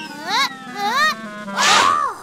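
Cartoon sound effects over background music: two short pitched glides that rise and fall, about half a second apart, then a louder noisy swish with pitched sweeps near the end as a character falls on the ice.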